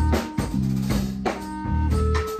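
A small band playing a groove: drum kit and bass, with a clarinet holding notes over them.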